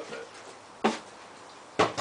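Two sharp knocks, one a little under a second in and a louder doubled one near the end, like hard objects striking against each other.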